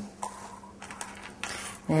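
Hands handling craft materials and tools on a work table: a few light clicks and knocks with soft rustling, over a faint steady hum.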